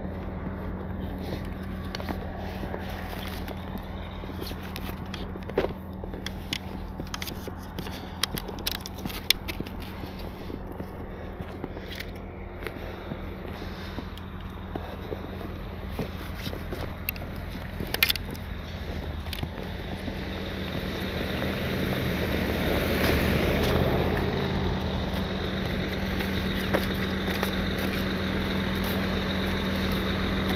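Footsteps crunching in snow, with scattered scrapes and clicks, over a steady low engine hum.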